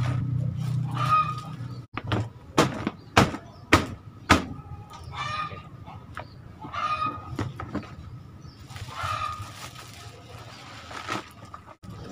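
Domestic chickens clucking on and off, with a few short calls. Four sharp knocks come close together between about two and a half and four and a half seconds in.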